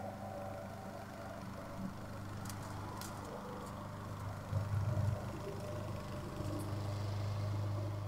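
A faint, steady low hum, with a short louder rumble about four and a half seconds in and a few light clicks.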